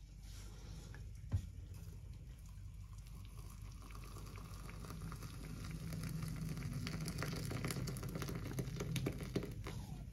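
Just-boiled water poured from a stovetop kettle through a mesh tea strainer onto loose-leaf tea in a mug: a faint steady splashing that grows louder about halfway in. A single click sounds about a second and a half in.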